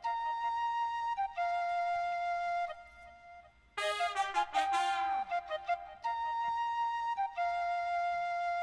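Logic Pro X software-instrument tin whistle and trumpet section playing a slow phrase of long held notes, two at a time, with no drums. There is a short gap a little under three seconds in, then a fuller phrase with bending pitch, and the held-note phrase comes round again about six seconds in.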